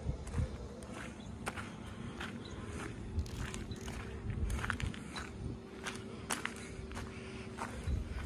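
Footsteps crunching irregularly on gravelly dirt, with a faint steady hum in the background.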